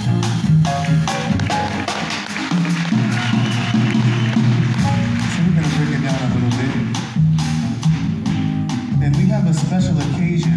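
Live small-band jazz: a male vocalist on a microphone over grand piano, upright double bass and drum kit. The bass moves note to note underneath and cymbals are struck throughout.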